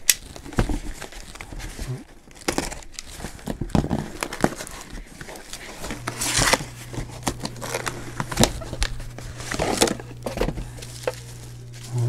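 A cardboard shipping box being opened by hand: flaps and tape pulled apart with irregular rustles, scrapes and sharp clicks, then bubble wrap crinkling as a wrapped acrylic enclosure is lifted out. A steady low hum comes in about halfway.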